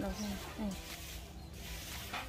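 A short low voice sound trailing off at the start, a second brief one about half a second later, then faint outdoor background.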